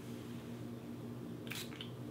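A single short spritz from a pump spray bottle of leave-in conditioner about one and a half seconds in, a brief hiss of fine mist onto hair, with a smaller puff just after. Otherwise quiet room tone.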